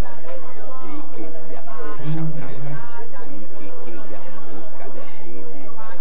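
A congregation praying aloud all at once, many voices overlapping in a loud, indistinct babble, with one voice holding a note briefly about two seconds in.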